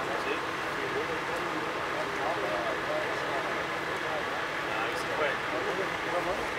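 Indistinct voices of people talking, over a steady hum from idling emergency vehicles.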